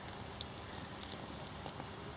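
Faint hiss with a sharp tick about half a second in and a few fainter crackles, from a red-hot pencil graphite rod carrying mains current. The end contact is burning with a small blue flame.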